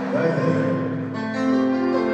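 Live band music in an arena: sustained chords on piano and guitar with no singing, changing chord about a second in.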